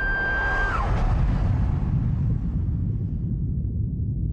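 The end of a man-made elk bugle call blown through a bugle tube: a high, steady whistle that drops in pitch and cuts off just under a second in. Under and after it a deep, continuous rumble runs on.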